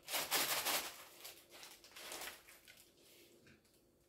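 Baking parchment rustling as chilled shortcrust dough is turned out of a glass bowl into a lined metal baking tray: loudest in the first second, then a few softer rustles, dying away in the second half.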